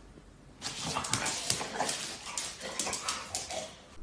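A dog making short, irregular vocal sounds, starting about half a second in, mixed with sharp clicks that fit claws on a wooden floor. The dog is excited over a treat it has just been given.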